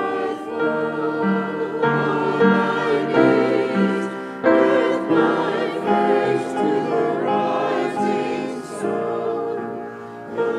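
Small mixed church choir singing a hymn together, holding sung notes in several voices, with a short breath between phrases about four seconds in.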